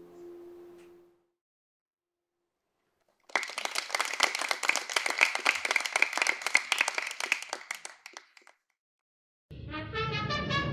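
The last acoustic guitar chord rings out and fades, and after a short silence an audience applauds for about five seconds. Orchestral music with brass and timpani starts just before the end.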